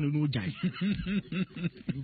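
A man laughing in a run of short, evenly repeated voiced pulses, about five a second, mixed in with talk.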